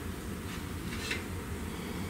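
Light handling of a metal organ reed pipe as it is lifted out of its rack, with one faint short clink about a second in, over a steady low hum.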